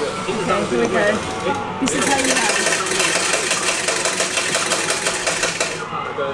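Claw machine's motors whirring with a rapid rattle as the claw moves, starting about two seconds in, over background voices and arcade music.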